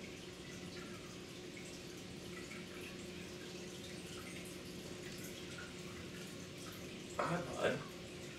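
Faint steady hum with light bubbling and dripping of water: an air pump driving an air stone in the enclosure's water dish.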